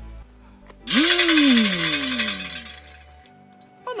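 Background music ends, and about a second later a loud rattling burst lasts under two seconds, together with a tone that jumps up and then slides steadily down in pitch; a man's voice starts right at the end.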